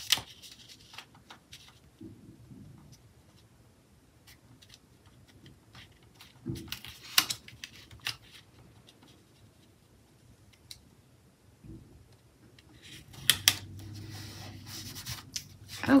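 Paper handling: a sticker being pressed and smoothed onto a planner page with the fingertips, giving light taps and short paper rustles, busiest about seven seconds in and again near the end.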